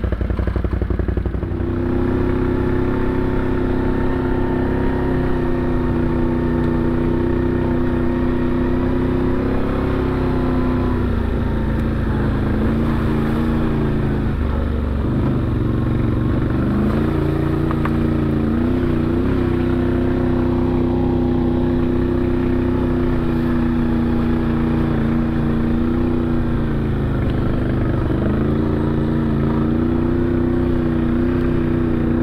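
Side-by-side UTV engine running at a steady cruising pitch on a trail, its note settling in about two seconds in. The pitch drops and picks back up twice, once around the middle and once near the end, as the machine eases off and accelerates again.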